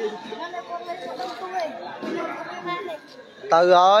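Spectators chattering, many voices overlapping at once. Near the end one voice starts up loud and clear above them.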